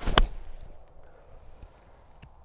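An 8-iron striking a golf ball: one sharp click about a quarter second in, just after a brief rush of the downswing. It is a poor strike, the worst of the day.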